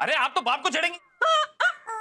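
A woman's shrill, excited voice in quick squawky bursts, with a short break about halfway.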